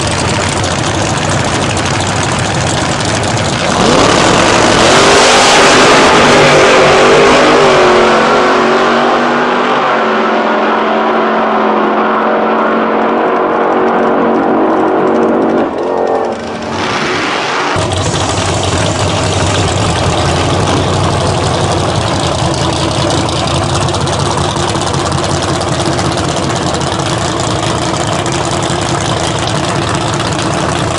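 A pair of V8 Outlaw Anglia drag cars idling on the start line, then launching about four seconds in at full throttle, the engines dropping in pitch and fading as they run away down the strip. A little past halfway the sound cuts abruptly to another drag car idling loudly on the start line.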